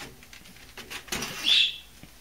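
A pleated air filter being slid out of an air handler's sheet-metal filter slot: light rustling and scraping, swelling past the middle into a louder scrape with a short high squeak.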